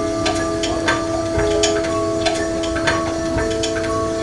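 Live band music: an electric guitar holds a steady drone of sustained notes, with a higher note changing every second or so. Sharp, irregular ticks and clicks sound over it.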